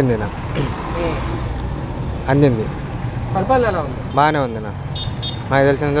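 A man talking in short spells over a steady low rumble of street traffic and vehicles.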